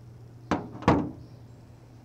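A steel reamer set down onto a padded surface, giving two quick knocks less than half a second apart, the second one louder.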